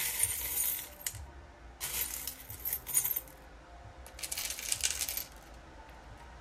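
A bowlful of small metal charms jangling and clinking as hands stir and mix them in a ceramic bowl, in three bursts of about a second each, before a charm casting.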